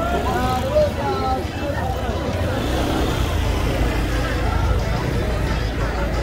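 Busy pedestrian street: voices of passers-by talking, clearest in the first second or so, over a steady low traffic rumble with a car moving slowly through the crowd.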